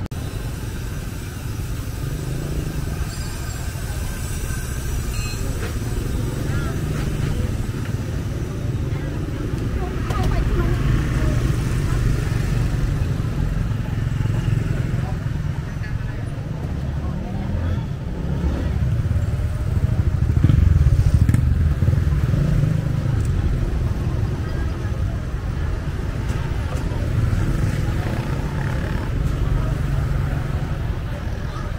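Busy street ambience: motorbike engines running and passing, over a steady low rumble, with background chatter of passers-by. The traffic swells about two-thirds of the way in.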